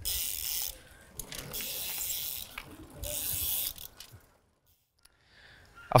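Bicycle freewheel ratchet buzzing in three bursts of about a second each as the rider coasts between pedal strokes.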